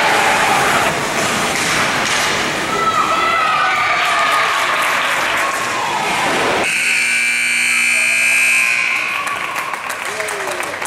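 Spectators' voices and shouting echo around an ice rink, then the arena's game horn sounds one steady blast of about two seconds, starting and stopping abruptly, marking the end of the game as the clock runs out in the third period.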